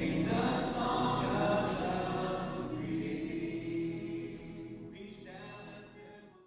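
A choir singing, held chords of many voices together, slowly fading out over the last few seconds.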